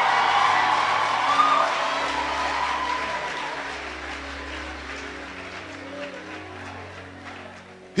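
Congregation applauding, with the clapping dying away steadily over the few seconds. Soft background music with sustained low notes plays underneath.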